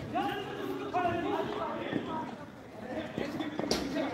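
Players' voices calling out across an outdoor netted cricket court, with one sharp knock near the end.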